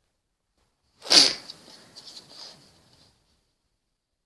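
A person sneezing once, sharply, about a second in, followed by a few fainter sounds.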